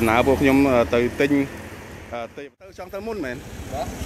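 Men talking over steady street-traffic noise. The sound drops out for a moment just past halfway, then the talking resumes.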